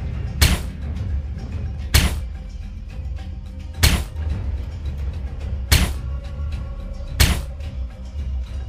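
Five single gunshot sound effects played from the skit's soundtrack over the hall's speakers, each a sharp crack about one and a half to two seconds apart, over steady low background music.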